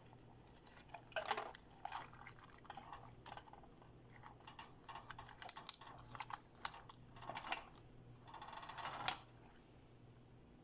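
A hand pressing and moving wet cooked rice and vegetables in a metal pot: scattered moist clicks and squelches, with a longer rustling squish near the end that cuts off suddenly.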